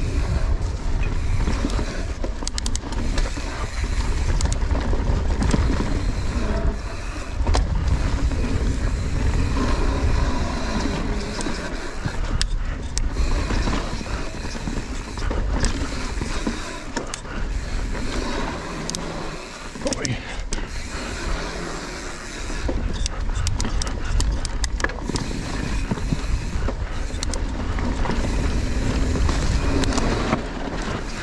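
Mountain bike riding fast down a dirt forest trail: a continuous low rumble of wind and tyres on the loose, leaf-covered ground, with the bike rattling and clicking over the bumps throughout.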